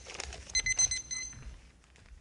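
Electronic timer alarm beeping in quick, high-pitched pulses, stopping about a second and a half in: the signal that a debate speech's time has run out. Faint handling noises follow.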